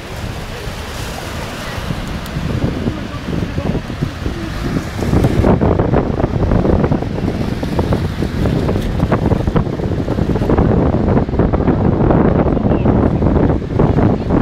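Small waves breaking and washing in the shallows, with wind buffeting the microphone; the rushing grows louder and heavier about five seconds in.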